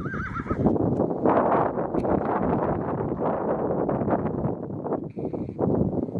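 Burro braying: a short wavering note, then a long pulsing call lasting about four seconds.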